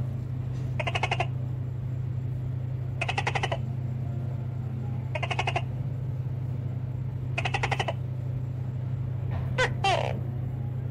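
Feeder crickets chirping: four chirps about two seconds apart, each a quick trill of about half a second, over a steady low hum. A couple of short, sharp squeaks near the end.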